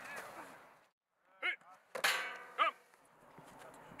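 A football player driving into a padded blocking sled: a sharp impact about two seconds in, with a brief metallic clang and ring from the sled's metal frame.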